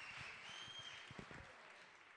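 Faint audience applause fading away to near silence.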